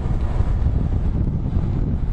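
Wind buffeting the camera microphone: a loud, fluctuating low rumble.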